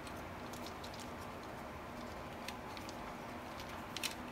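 Faint, steady room hiss with a few small plastic clicks and ticks as a car power-window switch's circuit board and housing are handled and fitted together.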